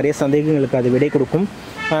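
A man's voice talking, with a short pause about one and a half seconds in.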